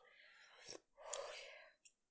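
Two faint, breathy exhales through the mouth, one after the other, from a person whose mouth is burning from Carolina Reaper–infused peanuts.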